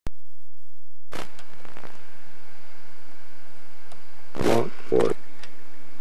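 A home camcorder starting to record: a click, then from about a second in the steady hiss of the camera's tape audio, with a few faint handling clicks. Two short voice sounds come near the end.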